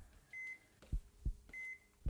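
Heart-monitor sound effect: two short high beeps about a second apart, over a heartbeat of paired low thumps.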